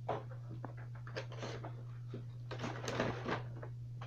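A few short rustling, breathy handling noises close to the microphone, the longest near the end, over a steady low electrical hum.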